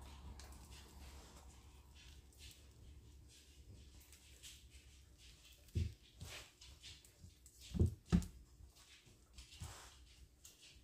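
Spatula scraping thick cake batter out of a glass mixing bowl into a glass baking pan: soft scrapes and plops, with a few dull knocks in the second half.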